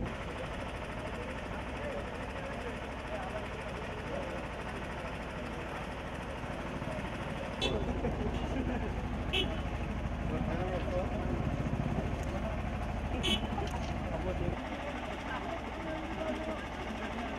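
Indistinct chatter of a gathered crowd over a steady low rumble. The rumble grows louder for several seconds in the middle, and a few sharp clicks stand out, the clearest about thirteen seconds in.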